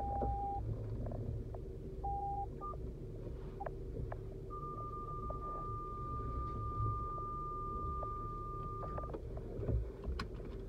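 Car engine and road rumble heard from inside the cabin, with scattered clicks. Over it come electronic beeps: a short one at the start, another about two seconds in, then one long steady beep lasting about four and a half seconds from around the middle.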